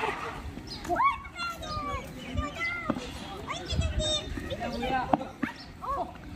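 Several young players and onlookers shouting and calling over one another during a kho-kho game: short calls rising and falling in pitch.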